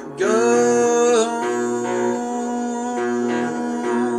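Guitar being played with a man singing along; a sung note slides up and is held for about a second near the start, over the guitar's ringing notes.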